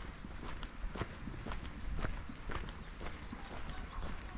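Footsteps of people walking on a brick-paved path, an even tread of about two steps a second, over a low rumble.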